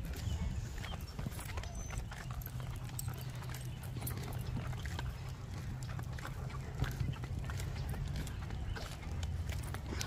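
Wheels of a pushed stroller wagon rolling along an asphalt path: a steady low rumble with scattered small clicks and rattles.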